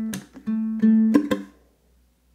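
Low-G ukulele playing a fingerpicked blues riff: repeated low notes on the fourth string at the second fret, broken by percussive palm slaps that mute the strings. It ends with a short muted percussive strum and cuts off about a second and a half in.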